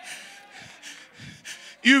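A man's sharp, breathy intake of breath into a handheld microphone between shouted phrases of preaching, with speech resuming near the end.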